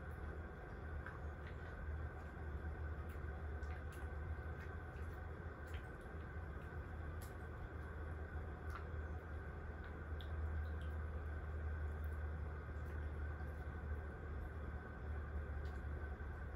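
Quiet room tone: a steady low hum with scattered faint clicks.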